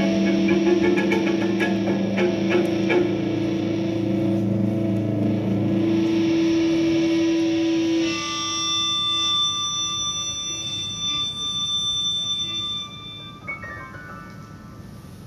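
Live band music led by an electric guitar played through effects, holding dense sustained chords. About eight seconds in the sound thins to quieter, clear, ringing high notes, with a short stepped run of notes near the end.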